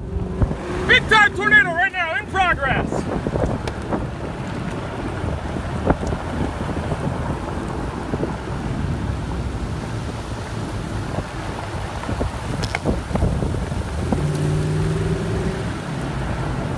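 Strong wind buffeting the microphone as a steady rushing rumble. A person's wavering, high-pitched shouts come in the first few seconds, and a brief steady hum sounds near the end.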